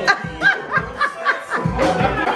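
A person laughing in a quick run of short ha's over dance music played by a DJ. The music's bass drops out for most of the moment and comes back near the end.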